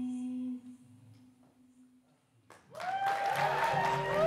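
Live experimental music: a steady held note, hummed or sung, cuts off about half a second in. After a near-quiet gap, a sudden loud wash of processed sound with sliding, wavering pitches comes in near the end.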